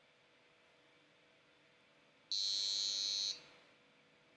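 Small buzzer module on an Arduino board sounding one steady high-pitched beep, about a second long, starting a little past halfway. It is the tone the program plays when the rotary encoder's count reaches the first preset value.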